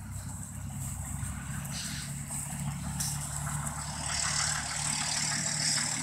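Background vehicle noise: a steady low engine hum, with road noise that grows louder over the second half.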